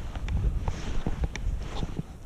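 Wind buffeting the microphone as a steady low rumble, with a few faint clicks.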